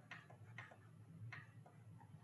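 Faint, irregular clicks of a computer mouse, about five in two seconds, over a low steady background hum.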